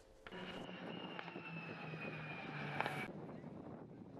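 Aircraft engine running as it flies past: a steady engine noise with a high whine that slowly falls in pitch. It cuts off about three seconds in.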